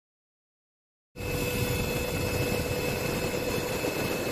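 Steady aircraft cabin noise, likely a helicopter's engine and rotor drone with a constant whine, cutting in abruptly about a second in.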